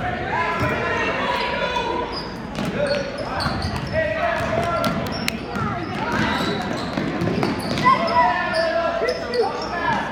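Basketball bouncing on a gym floor as players dribble, with short knocks scattered throughout, amid shouting voices in a gymnasium.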